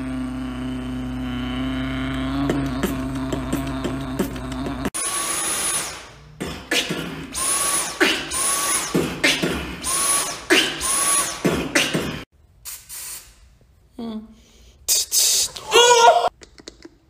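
Beatboxing over a handheld massage gun, whose motor gives a steady hum for the first five seconds until a sudden cut. Then a cordless stick vacuum is switched on and off in a beat, each burst ending in a short rising whine, mixed with beatbox sounds, until about twelve seconds in; a few short mouth sounds follow near the end.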